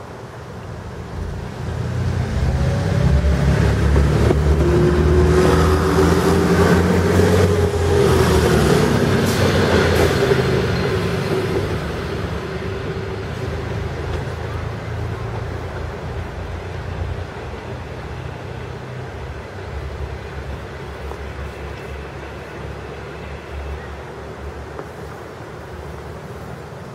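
ALn 663 diesel railcar running past close by, its diesel engines loud, with a few sharp clicks of wheels over rail joints about ten seconds in. The engine sound then fades to a weaker steady running as the railcar moves away.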